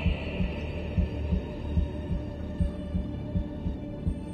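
Tense dramatic underscore from a TV episode: a low, heartbeat-style pulse of thuds repeating a little under once a second, under a held high drone that slowly fades.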